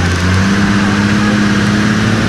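Land Cruiser's engine running hard under load, towing a stuck truck out of soft sand on a tow strap; a steady drone whose pitch rises a little about half a second in as it pulls.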